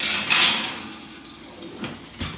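Metal oven rack sliding on its rails with a scraping rattle that starts suddenly and fades over about half a second, followed by a light knock near the end.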